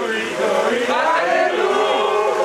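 A group of people singing together, several voices overlapping on held notes.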